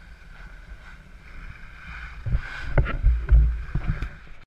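Wind buffeting the microphone of a handheld action camera while skiing, over the hiss of skis sliding on snow. The low rumble grows into heavy, irregular thumps in the second half.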